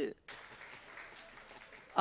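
Faint, steady applause from a studio audience. It starts just after a brief drop to silence.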